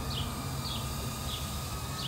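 A small bird chirping repeatedly outdoors: short, high, falling chirps about two a second, over a steady low background hum.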